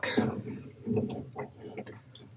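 Faint handling sounds of a coax patch cable at the panel's coax ports, with one light click about a second in.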